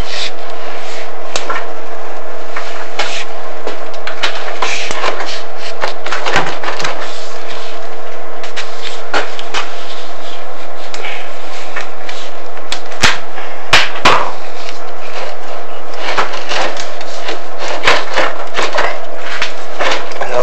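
Chimney inspection camera and its push rod scraping and knocking irregularly against the inside of a heating flue as it is lowered, with the sharpest knocks about 13 and 14 seconds in. A steady hum runs underneath.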